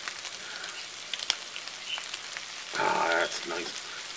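Shrimp frying in a nonstick skillet: a steady sizzle with fine crackling. A brief voice-like sound comes about three seconds in.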